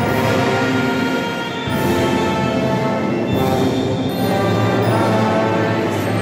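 A band playing slow processional music with long held chords: a popular alabado.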